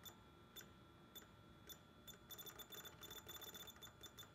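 Faint clicks of buttons being pressed on a PACE ST 350 rework station's control panel while a reflow profile is entered: four single presses about half a second apart, then a quick run of presses near the end.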